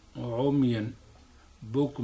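Speech only: a man lecturing into a microphone, one short phrase and then the start of another after a brief pause.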